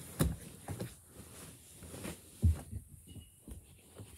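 A few soft, irregularly spaced low thuds on the floor, the loudest about two and a half seconds in, from a child moving on hands and knees across the floor toward the phone.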